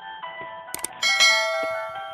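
A double mouse-click sound effect, then about a second in a bright bell chime that rings and slowly fades, over background music with held tones. These are the click and notification-bell effects of a subscribe-button animation.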